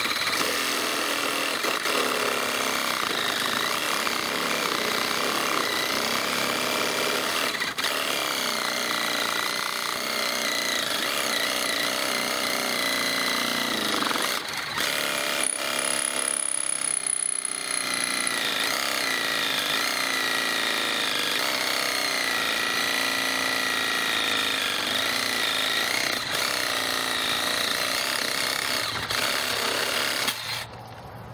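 Reciprocating saw cutting through a dead willow branch, running steadily with a motor whine that wavers in pitch as the blade works through the wood, changing briefly about halfway through.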